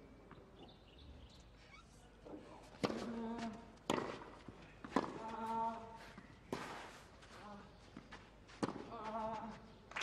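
A tennis rally starting about three seconds in: about six racket strikes on the ball, roughly a second apart. One player lets out a short grunt with every other shot, three grunts in all.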